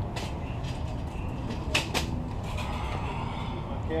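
Two sharp clicks a quarter second apart, just before the middle, from keystrokes on a laptop keyboard, over a steady low background rumble.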